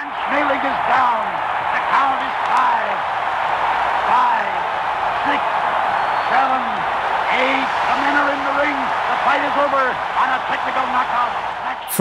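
Archival radio broadcast of a boxing match: a man's voice calling the action excitedly over a large crowd cheering. It has the thin, muffled sound of an old recording.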